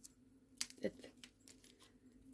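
A few light clicks and rustles of small plastic pieces and bags of diamond-painting drills being handled and set down on a table.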